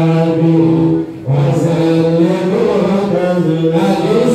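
A man's voice chanting an Islamic prayer into a microphone in long, held notes, with a brief pause for breath about a second in.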